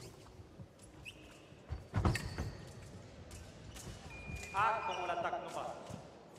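Fencers' feet thumping and stamping on the piste during an exchange about two seconds in. About four seconds in comes a steady high beep from the electric scoring machine registering a touch, with a man's shout over it.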